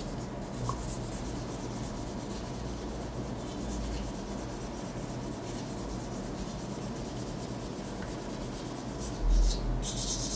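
Hand sanding a small metal lighter part with folded abrasive paper: a steady, scratchy rubbing of paper grit on metal. A brief dull thump comes near the end.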